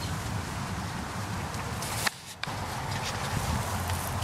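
Wind buffeting the microphone: a steady low rumble, with a short break a little over two seconds in.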